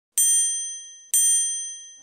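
Two identical bright ding chimes about a second apart, each struck sharply and ringing out as it fades: the sound effect of an animated channel logo intro.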